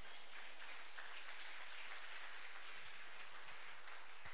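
Congregation applauding: a steady patter of many people clapping.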